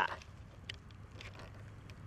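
Quiet outdoor background with a few faint, short clicks scattered through it.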